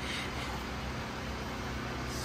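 Steady background hum and hiss with a low rumble, unchanging throughout, with no distinct tool strikes or clicks.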